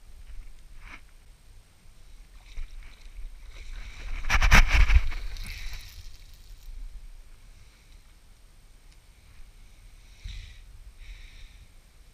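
A fishing rod being cast with a spinning reel. About four seconds in there is a brief loud rush with a rapid clatter as the line whips out, fading over the next second or so. Fainter short scrapes follow near the end.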